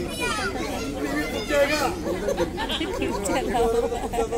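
Speech: several voices talking over one another.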